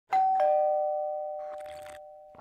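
Two-note ding-dong chime: a higher note, then a lower one a quarter of a second later, both ringing on and slowly fading.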